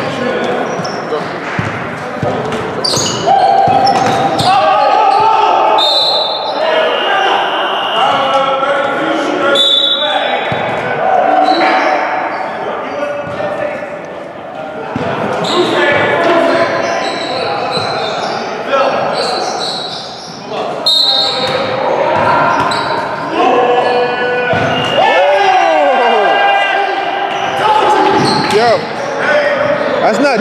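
A basketball bouncing repeatedly on a hardwood gym floor during play, mixed with players' voices and a few sharp squeaks about 25 seconds in, all echoing in a large hall.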